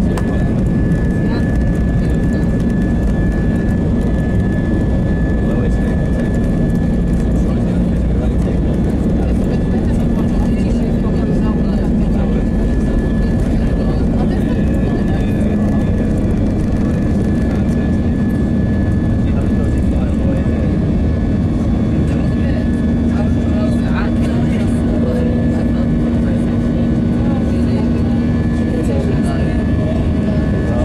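Airliner's engines at takeoff power heard from inside the passenger cabin: a loud, steady rumble with a steady high-pitched whine above it, running on through the takeoff roll and the climb-out.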